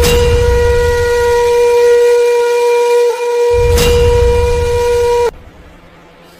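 A single long horn-like note held at one steady pitch, the sound said to remind cats of being worshipped in ancient Egypt. A deep rumble comes in under it twice, and the note cuts off suddenly about five seconds in.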